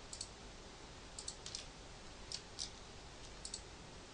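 Faint clicks of a computer mouse and keyboard while editing in Blender: scattered single clicks and quick pairs over a low steady hiss.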